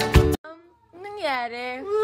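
Background music stops short; after a brief gap comes a drawn-out, high-pitched meow-like call that dips and then rises in pitch over about a second.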